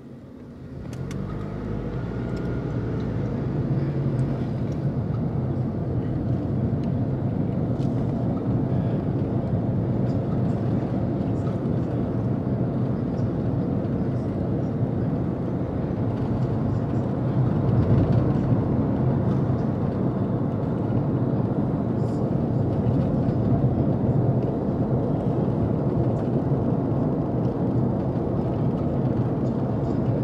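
A car's engine and road noise heard inside the cabin as it pulls away from a stop, rising in pitch and loudness over the first few seconds, then a steady drive at town speed.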